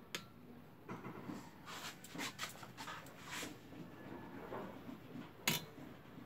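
Faint, irregular clinks and scrapes of a metal ladle stirring a pot of soup, with one sharper clink about five and a half seconds in.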